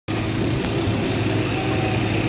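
Construction machinery engines running steadily during a raft foundation concrete pour: a low, even drone with general site noise.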